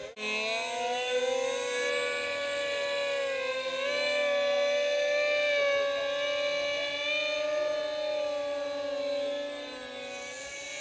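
Two radio-controlled Alpha Jet models flying together, their ducted fans giving a steady whine whose pitch slowly wavers up and down.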